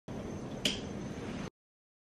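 A single sharp click of a bedside lamp's switch over faint room hiss. The sound cuts off abruptly about a second and a half in.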